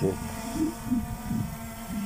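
DJI Mavic Air 2 drone hovering overhead, its propellers giving a faint steady hum, with a few soft, short low sounds.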